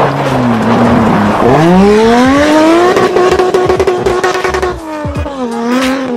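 Engine of a Nissan Patrol with a swapped-in engine, driven hard on a dirt track. The revs drop, climb sharply about a second and a half in, hold high for a while, then fall away near the end, over the crunch of tyres on loose dirt.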